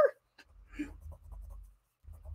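Faint scratching and rubbing of a drawing tool on charcoal paper as the portrait is worked, with a low rumble underneath.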